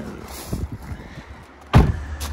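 A BMW i3's front door being shut: one solid thump near the end, after a few faint knocks of handling.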